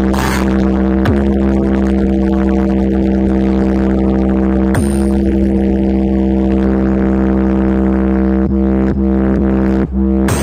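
Stacked DJ box loudspeaker system playing electronic music at high volume: a loud held drone with deep bass, broken by short falling sweeps about a second in, near the middle and at the end.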